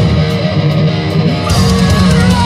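Progressive metal band playing live through a club PA: for about the first second and a half only guitars and bass ring out without drums, then the full band with drums and cymbals comes back in.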